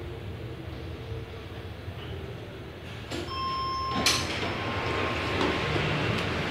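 OTIS traction elevator car humming low as it settles at the ground floor. About three seconds in, a single arrival chime tone sounds, followed by a click and the louder noise of the doors sliding open.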